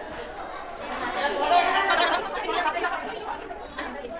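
Several people chattering at once, their voices echoing in a narrow, enclosed stone stairwell.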